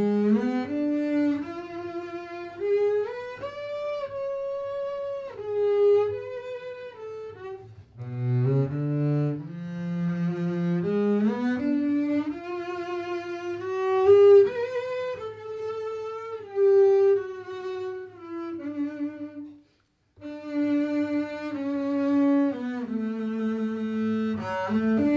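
Solo double bass with three gut strings, bowed, playing a study: phrases that climb from low notes up to high held notes with vibrato and then fall back. There is a short break about twenty seconds in.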